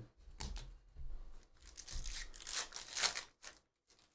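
Chrome trading cards being slid over one another and shuffled in the hands: a run of short, irregular scraping rustles.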